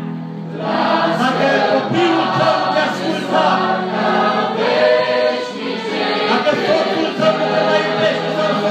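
Mixed church choir of men, women and children singing a hymn together over a steady low sustained accompaniment, a new phrase starting about half a second in.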